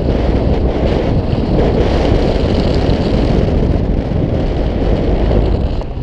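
Loud, steady wind buffeting a GoPro's microphone: the rush of air past the camera during a paraglider flight, a low rumble without breaks.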